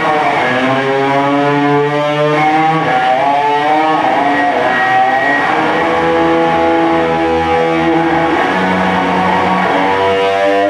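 Overdriven electric guitar playing a sustained blues lead, holding long notes and bending several of them, over electric bass.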